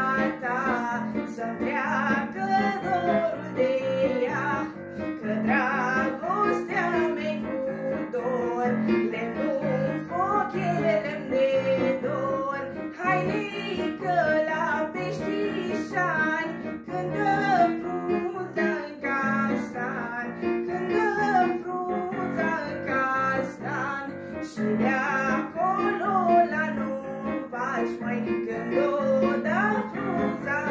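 Romanian folk song performed by a girl's voice over an electronic keyboard accompaniment: a melody with many ornaments and bends over steady chords.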